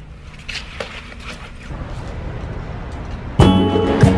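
Low, even background noise with a couple of short clicks, then background music with a steady beat starts suddenly near the end and is the loudest sound.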